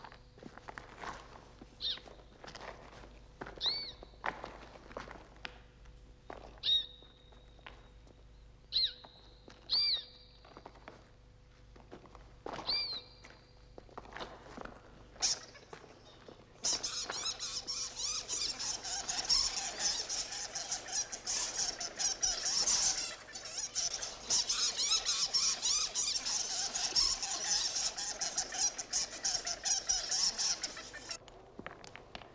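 A colony of bats in a cave: a few short, high squeaks at first, then, about halfway through, a sudden loud mass of high chittering and wing flutter as many bats stir at once, disturbed in their roost.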